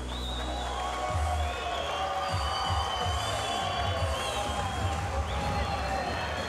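Music with a pulsing bass and long held notes.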